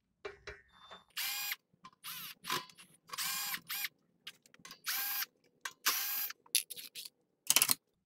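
Cordless drill-driver backing out the case screws of a UPS in a series of short whirring bursts, its pitch dipping and rising as each burst starts and stops.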